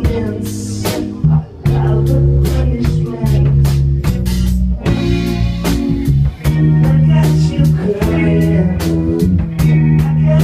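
A live rock band playing loudly: electric guitar, bass guitar and drum kit, with held bass notes changing every second or so under a steady drum beat.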